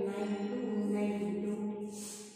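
A woman's voice chanting numbers in a slow, drawn-out sing-song, each tone held long and steady.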